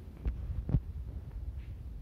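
Two low, dull thumps about half a second apart, the second the louder, over a faint low hum of room noise.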